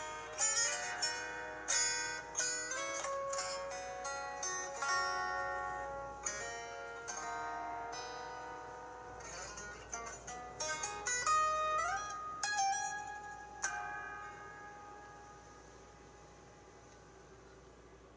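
Solo fingerstyle acoustic guitar playing a slow melody, single plucked notes and chords ringing over each other. A couple of notes are bent or slid upward about two-thirds of the way through, and the closing notes ring out and fade away over the last few seconds as the piece ends.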